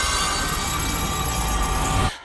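Circular saw blades in a metal wall grinding with a loud metallic screech and a steady high whine, cutting off abruptly at the end.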